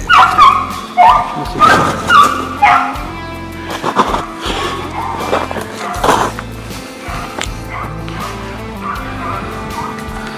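Hunting dogs baying in a series of calls on a rabbit's trail, loudest in the first three seconds and fainter after, over background music.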